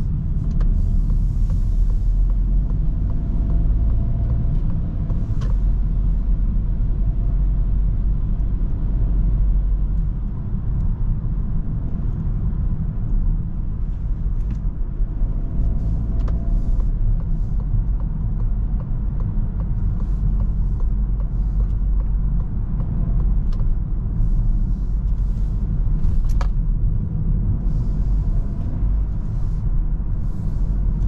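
Inside the cabin of a moving 2023 Citroen C5 Aircross: a steady low rumble of its 1.2-litre three-cylinder petrol engine and tyres, with a few sharp clicks spread through.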